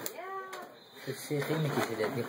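A short, high-pitched vocal sound that rises and then falls in pitch, followed about a second later by indistinct talking.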